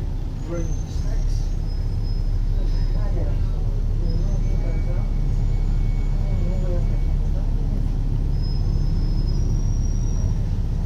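Inside an Alexander Dennis Enviro500 double-decker bus on the move: the low engine and road rumble rises slightly about a second in and then holds steady. Faint thin high whines come and go over it.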